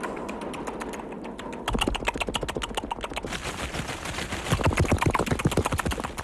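A rapid, irregular run of sharp clicks or taps, roughly ten a second, faint at first and louder from about two seconds in.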